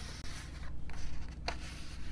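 Paper cards being handled, with soft rubbing and sliding and a small sharp tap about one and a half seconds in.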